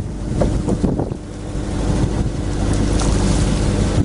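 Wind noise on the microphone over sea noise and a steady low hum aboard a fishing boat, dipping about a second in and then slowly building.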